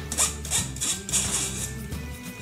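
Squeezed grated zucchini scraped out of a fine metal mesh sieve into a plastic bowl: a few short scrapes in the first second and a half. Background music with a steady bass line plays throughout.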